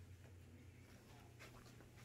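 Near silence: room tone with a low steady hum and a few faint rustles.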